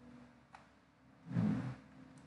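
Quiet room tone with a faint single click about half a second in, then a brief murmur from a person's voice near the end.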